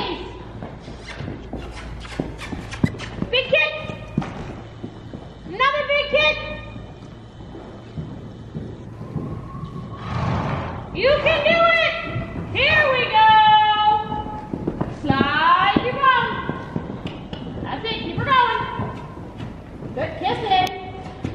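A cantering horse's hoofbeats thudding on the sand footing of a large indoor arena, under a voice that comes and goes several times.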